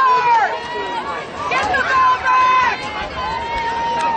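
Several voices shouting and calling out over one another, with drawn-out calls, one of them held for about a second near the end.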